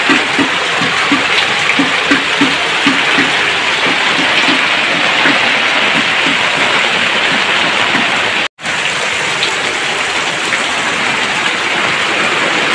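Heavy rain pouring down, with rainwater rushing and splashing down a flight of stone steps as a steady, dense rushing noise. The sound cuts out for an instant about two-thirds of the way through.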